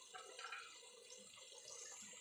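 Chopped tomatoes frying in hot oil in a pot: a faint, steady sizzle with small crackles as the tomatoes soften.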